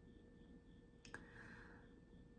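Near silence: room tone, with one faint short click about a second in.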